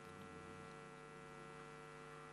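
Faint, steady electrical mains hum, a stack of constant tones with nothing else over it: near silence.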